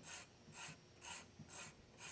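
A metal hand file rasping across the end grain of a wooden tenon in faint, even strokes about two a second, chamfering the tenon's end.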